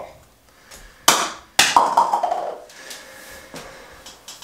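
A mobile phone tossed down onto a hard surface: two sharp knocks about half a second apart, the second followed by a short rattling clatter as it settles.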